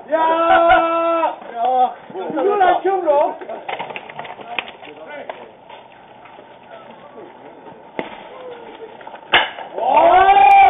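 Baseball players' shouted calls on the field, one long held call at the start, then quieter. About nine seconds in comes a single sharp knock as the pitch reaches the plate and the batter swings.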